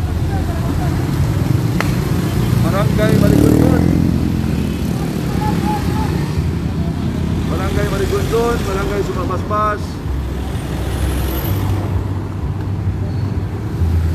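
Motorcycles and cars of a motorcade passing along a street, with a steady engine rumble and one louder pass swelling about three to four seconds in.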